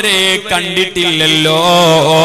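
A man chanting melodically into a microphone, his voice held on long wavering notes with short breaks between phrases.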